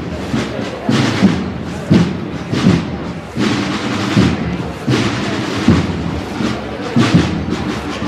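Procession drums beating a slow march, a strong beat falling roughly once a second.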